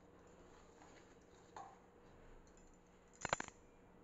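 Faint rubbing of flour and oil being mixed by hand in a stainless-steel bowl, with a small tick about one and a half seconds in and a short cluster of sharp clicks about three seconds in.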